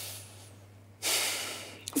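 A man's audible breath before speaking: a soft exhale at the start, then a sharper intake of breath about a second in, just before his answer begins.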